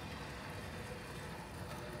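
Faint steady room noise as physics lab trolleys roll quietly along an aluminium track. There is no knock where the carts meet: their magnetic ends repel without touching.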